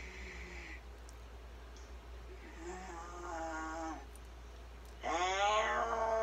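A voice on an old exorcism recording: a faint utterance, then a louder, drawn-out one with its pitch sliding down from about five seconds in. It is the possessed person answering in Italian as the demon.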